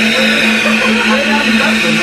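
Flow bench blower running steadily and drawing air through a motorcycle cylinder head under test. It makes a loud, even hum with a rushing hiss of airflow on top.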